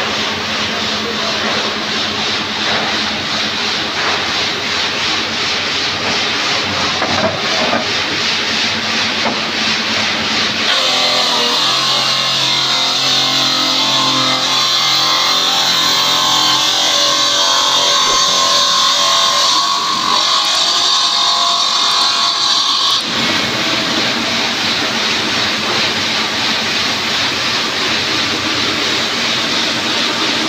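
Steady machine noise in a stone workshop. From about 11 to 23 seconds, a circular stone-cutting saw cuts through a wet stone slab with a steady high whine. It stops suddenly, and the rougher machine noise comes back.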